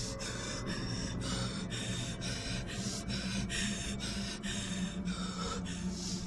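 A woman breathing hard and fast in distress, quick ragged breaths about two a second, over a low steady hum.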